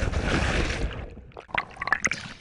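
A person plunging into open water after a tube wipeout: a loud rushing splash that dies away within about a second, then a few bubbling pops heard with the camera underwater.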